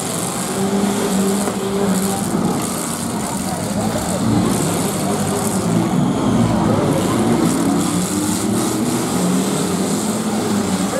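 Demolition derby cars' engines running and revving together in the arena, a dense steady drone whose pitch rises and falls as drivers rev, with crowd chatter mixed in.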